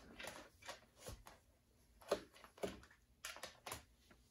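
Faint handling sounds, a scattered series of light clicks and rustles, as multimeter test leads are picked up and brought to the amplifier chassis with a gloved hand.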